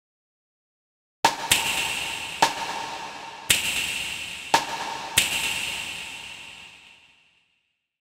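Sampled cymbal hit from a software drum kit, triggered six times at uneven intervals, each hit ringing into the next. The last ring fades out about seven seconds in.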